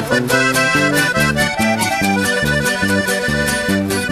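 Norteño band music with no vocals: a button accordion plays the melody over bass notes and drums that keep a steady beat.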